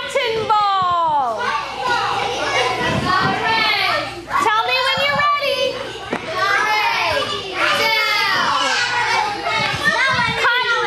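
A classroom full of young children shouting and chattering excitedly all at once, many high voices overlapping without a break.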